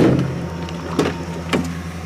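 Van engine idling steadily, with a sharp knock at the start and two lighter clicks about a second and a second and a half in.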